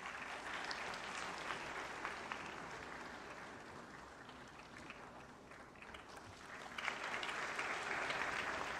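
Audience applauding, the clapping easing off midway and swelling again near the end.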